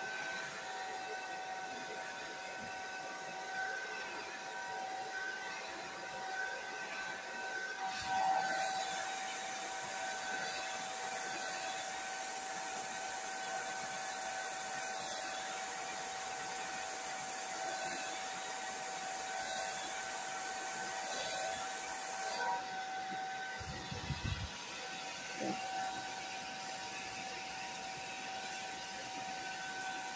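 Hand-held hair dryer running steadily close to the hair: a rush of air with a steady whine. The hiss turns brighter about a quarter of the way in and softens again about three-quarters through.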